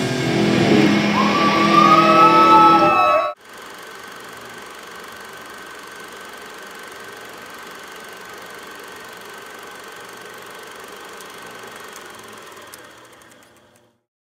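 A live heavy rock band with guitars and drums playing loudly, with a high sustained tone that bends up and down in pitch. About three seconds in it cuts off abruptly, leaving a steady low hiss that fades away near the end.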